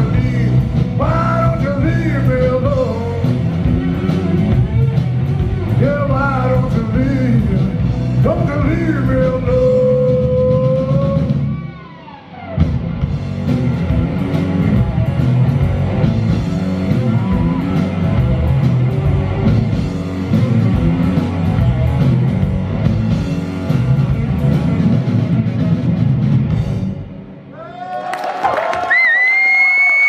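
Live rock song: a male voice singing over electric guitar and drum kit. The vocal line stops after about twelve seconds and the band plays on. Near the end a high bending note is held.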